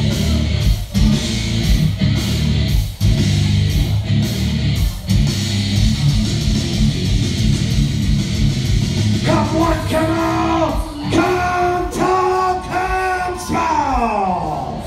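Loud rock music with electric guitar played over a PA; about nine seconds in, a singing voice comes in over the music.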